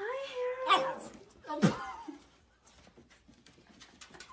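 Corgi puppy vocalising: a drawn-out whining note, then two short yaps about a second apart, the second dropping in pitch, all within the first two seconds.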